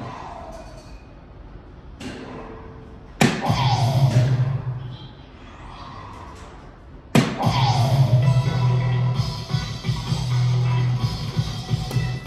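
Electronic soft-tip dart machine playing its hit sound effects as darts land. Two sudden hits come about four seconds apart, each followed by a falling swoop and a short electronic jingle. The second runs on as a longer musical fanfare.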